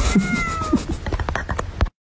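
A cat meowing once, a short call falling slightly in pitch, over a run of quick clicks and knocks. The sound cuts off abruptly just before the end.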